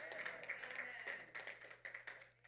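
Faint, scattered clapping from a few members of a church congregation, tailing off near the end.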